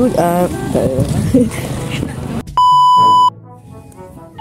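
A man's voice, then a loud, steady electronic beep about two and a half seconds in. The beep lasts under a second and cuts off sharply, and quieter background music follows.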